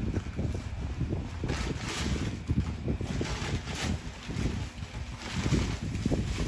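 Brown kraft packing paper being handled and crumpled, a continuous crinkling rustle with many small crackles and a low rumble of handling.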